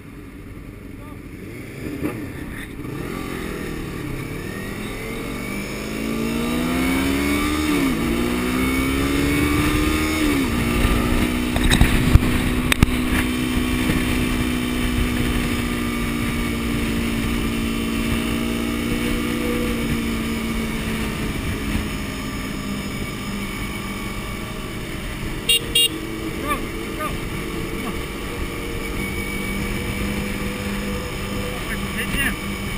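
Sport motorcycle engine heard from on board, revving up through the gears with two upshifts about eight and ten seconds in, then running at a steady engine speed while cruising.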